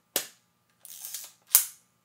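Old film camera mechanism being worked by hand: a sharp click, a short rasping wind, then a louder sharp click. He is cocking the camera and advancing the film to check that it now transports.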